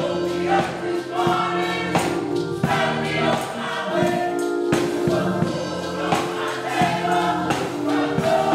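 Gospel vocal group singing together in close harmony, over held accompanying notes and a percussion beat.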